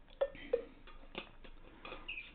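A few light, sharp clicks and knocks, irregularly spaced, about four in two seconds.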